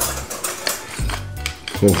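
Hand-held wooden salt mill being twisted, grinding salt in short rasping clicks, over background music.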